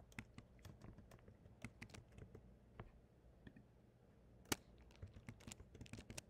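Faint typing on a computer keyboard: scattered key clicks, with one louder click a little past the middle.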